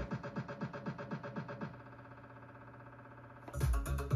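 An electronic dance track run through DJ software effects: the music breaks into a rapid stutter of about eight pulses a second that fades to a quiet held tail, as the effect's values sweep automatically. Near the end the full track with its bass drops back in as the effect is released.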